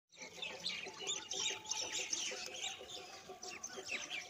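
Many birds chirping at once, a dense run of short, high, overlapping calls.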